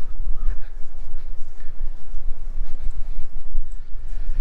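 Wind buffeting an outdoor camera microphone: a loud, uneven low rumble that rises and falls throughout.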